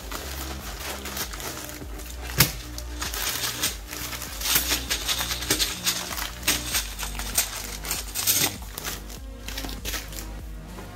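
Plastic packaging crinkling and rustling as it is unwrapped and bags of Lego pieces are handled, with light clicks throughout and one sharp tap about two and a half seconds in. Background music plays underneath.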